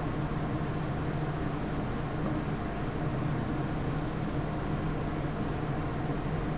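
Steady background hiss with a low, even hum: room noise, with no distinct events.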